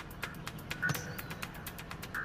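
A hammer dropped onto loose sand lands with a single dull thud about a second in. Faint background music with a steady ticking beat runs underneath.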